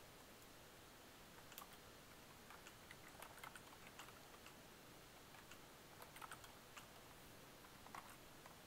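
Faint computer keyboard typing: short runs of light keystrokes starting about a second and a half in, over near-silent room tone.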